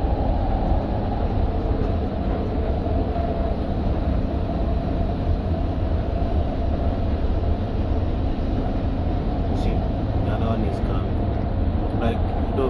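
A Doha Metro train running along its track, heard from inside the front car: a steady low rumble of wheels on rail.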